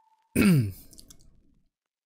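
A man's short voiced sigh about a third of a second in, falling in pitch as it trails off.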